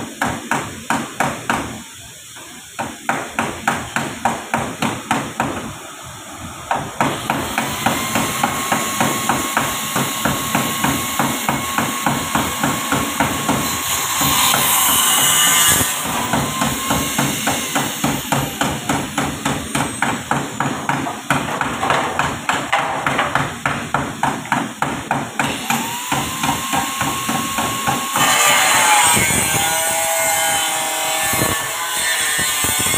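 Rapid repeated hammer blows on a car's sheet-metal body, about three to four a second, during body-panel removal. A steady high whine that opens with a short rising pitch comes in a few times over the strikes, with bursts of hiss near the middle and the end.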